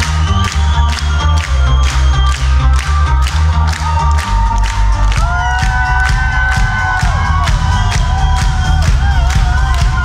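Loud live band music with a steady beat and a heavy pulsing bass line. A long held note comes in about halfway through, and a crowd cheers over the music.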